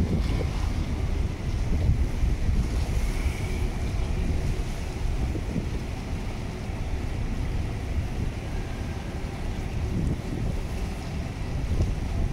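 Wind buffeting the microphone over a steady low rumble of boat engines and harbour water.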